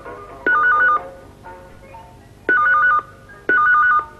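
Telephone ringing with an electronic warbling trill that flicks rapidly between two pitches, in a double-ring cadence. Three half-second rings: one about half a second in, then two close together near the end.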